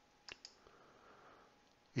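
Quiet pause between spoken sentences: one short click about a third of a second in, then a faint soft hiss.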